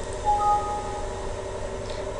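A short electronic alert chime of two steady notes sounding together, lasting under a second, as a software warning dialog pops up. A steady low hum runs underneath.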